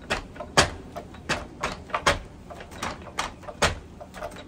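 Wrapped fists striking the padded board of a wall-mounted makiwara: about nine sharp knocks in quick succession, roughly two a second, some harder than others.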